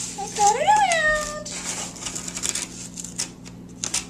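X-Acto craft knife drawn along a curved line in cardboard: a run of short, dry scratching strokes. It is a repeat pass along the same scored line, needed because the cardboard is thick.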